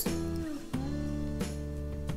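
Background music: a guitar playing held, plucked notes that change about every half second to second.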